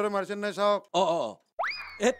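A man's voice, then about one and a half seconds in a comic sound effect: a whistle-like tone that shoots quickly up in pitch, then slides slowly back down.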